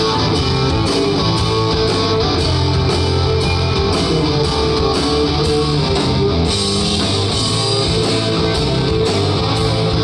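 Live rock band playing: two electric guitars through amplifiers, bass guitar and drum kit, keeping a steady beat.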